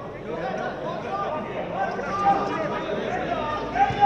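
Several men's voices talking and calling out over one another: untranscribed chatter with no single clear speaker.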